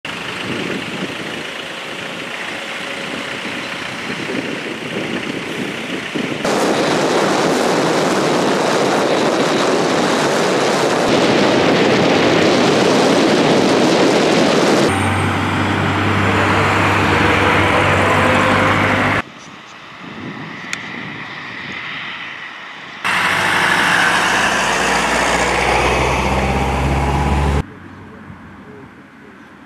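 Road traffic: tyre and engine noise from cars and heavy lorries on a highway, with a low steady lorry-engine hum in the later part. The sound changes abruptly several times between segments.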